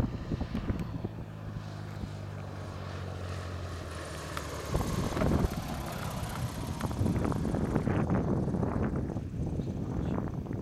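Light single-engine propeller trainer on final approach for a touch-and-go, its engine and propeller giving a steady drone. About five seconds in this gives way to gusty wind buffeting the microphone.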